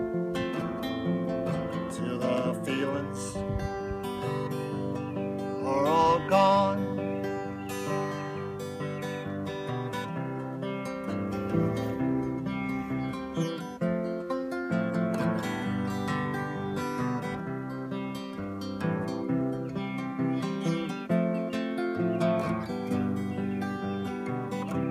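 Acoustic guitar strummed steadily through a chord progression, an instrumental break in a folk-style singer-songwriter song.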